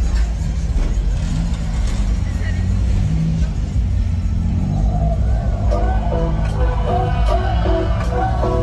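Cars cruising slowly past with a low engine rumble, mixed with loud music from car stereos and crowd voices. A tune of short repeated notes comes in about six seconds in.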